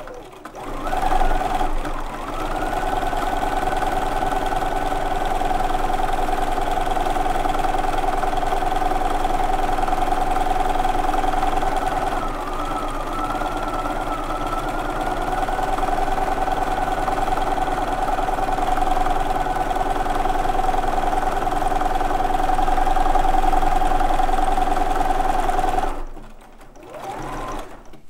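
Bernina domestic sewing machine running steadily during free-motion quilting, its needle stitching continuously through the quilt layers. It eases off briefly about halfway through and stops a couple of seconds before the end.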